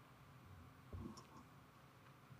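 Near silence: room tone, with one soft thump and a few faint clicks about a second in.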